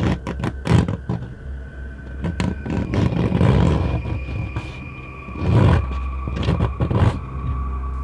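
Scratching on a door as a horror sound effect: a run of rough scraping strokes, two of them longer and louder, over a low droning music bed with a few held tones.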